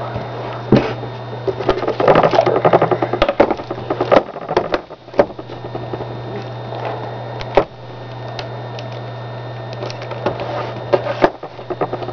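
Handling noise from two plastic-cased laptops, a white iBook G3 and a black MacBook, being opened close to the microphone: a dense run of rubbing, knocking and clicking a couple of seconds in, then scattered single clicks, over a steady low hum.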